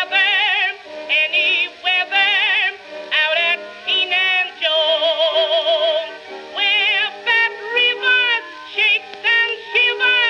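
A female contralto voice with orchestra, played from a 1922 Okeh acoustic-era 78 rpm shellac record on a turntable. The singing has a wide, fast vibrato and a long held note in the middle. The sound is thin and narrow-band, as old acoustic recordings are.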